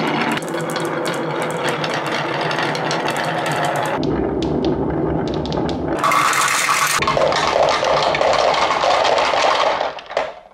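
Glass marbles rolling down the wavy grooves of a wooden HABA marble slope: a continuous rolling rumble with many small clicks of marbles knocking together. The sound changes abruptly about four, six and seven seconds in, and dies away right at the end as the marbles come to rest.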